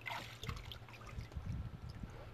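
Shallow pool water sloshing and lightly splashing as toddlers wade and grab water balloons from the water, with a few small splashes.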